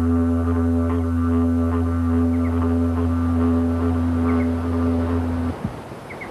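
Didgeridoo playing one steady low drone with a stack of overtones above it, the player's lips vibrating into the hollow branch; it stops abruptly about five and a half seconds in.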